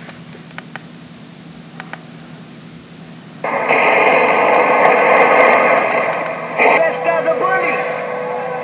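Low steady hum with a few faint clicks. About three and a half seconds in, a sudden loud burst of radio static and tones starts, and near the end it gives way to a thin voice that sounds filtered through a radio.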